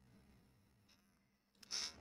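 Near silence: room tone in a pause between sentences, with a faint tick about a second in and a short breathy hiss just before speech resumes at the end.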